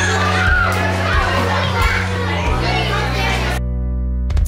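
Many children chattering and calling at once, over background music with a steady low bass line. The chatter cuts off abruptly near the end, leaving the music alone.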